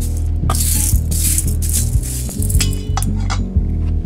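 Background music with a steady low bass, over the rattling hiss of coarse sugar crystals being shaken in a perforated stainless steel strainer, with a few light metal clinks.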